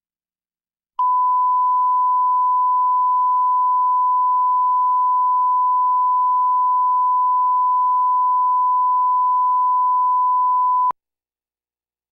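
Bars-and-tone reference test tone played with SMPTE colour bars: one pure, unwavering beep at a single pitch. It starts about a second in and cuts off suddenly with a click about ten seconds later.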